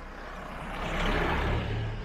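An SUV driving past in the opposite direction. Its engine hum and tyre noise swell to a peak about a second in, then fade as it goes by.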